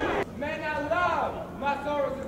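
A man's voice calling out in long, rising-and-falling lines, with a sudden sharp crack right at the start.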